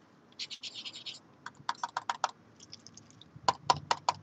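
An adhesive (sticky) pen's tip scratching on paper in several quick groups of short strokes while it is being tested to see whether it flows.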